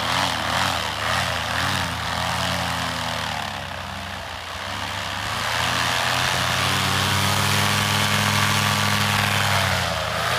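Tandem paramotor's engine and propeller running at high power for a running takeoff. The pitch wavers over the first few seconds, then holds steadier and grows louder from about six seconds in as the machine lifts off.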